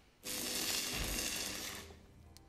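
Small gas torch hissing steadily: a burst of flame noise that starts abruptly about a quarter second in and cuts off about a second and a half later.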